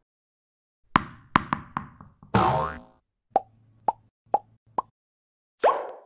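Animated logo sound effects: four quick sharp hits with ringing tails, a swoosh, then a string of four short pops and a last swept pop near the end.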